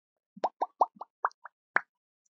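Animation pop sound effects: a quick run of about seven short, bubbly pops, one every fifth of a second or so, starting about half a second in. Each pop is a brief upward blip.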